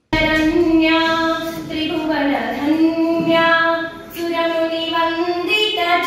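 Children's voices singing in unison, holding long notes on a fairly steady pitch. It starts abruptly.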